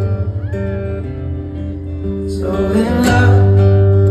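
Live acoustic-guitar music at a stadium concert, with held notes and a fuller swell about two and a half seconds in, heard from within the crowd.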